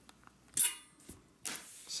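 A steel coil spring being hooked onto a bolt of a stainless steel stove makes one short, faint metallic scrape about half a second in. Near the end comes a short breath drawn in.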